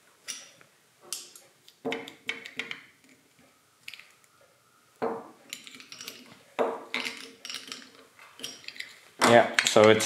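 Snap-ring pliers and a steel circlip clicking and clinking against the metal head of a Coats M-76 wheel balancer as the circlip is worked into its groove. There are a number of sharp metallic clicks spread a second or so apart, some ringing briefly.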